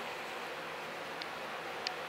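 Steady hiss of indoor room noise with a faint low hum, broken by two faint ticks, about a second in and near the end.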